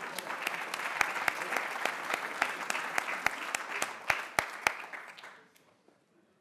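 Audience applauding, with a few sharper close claps standing out, dying away about five and a half seconds in.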